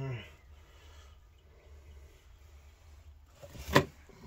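Faint low hum, then one sharp knock near the end.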